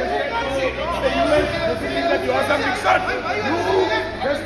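Several men's voices talking over one another in a heated exchange, none clear enough to make out, over a low steady hum that fades out about a second and a half in.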